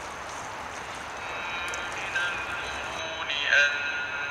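Water pouring from a large plastic bottle onto a potted shrub, a steady splashing hiss. From about a second in, music with a singing voice fades up over it and grows louder near the end.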